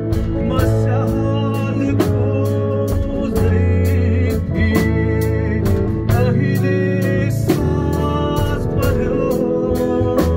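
A live band playing a song: a male voice singing while an acoustic guitar is strummed, over electric bass and a drum kit keeping a steady beat of about two strokes a second.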